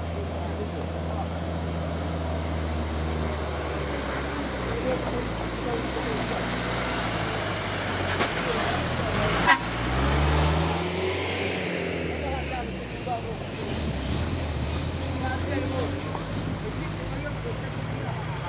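A loaded light cargo truck's diesel engine pulls up a steep dirt grade. It grows louder as the truck passes close by about ten seconds in, its pitch bending up and then down. A single sharp click comes just before it passes.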